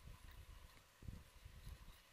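Near silence: room tone with faint, irregular low rumbles.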